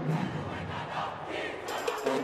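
A group of voices shouting together over arena crowd noise, in a gap between band passages; sharp percussion hits come in near the end.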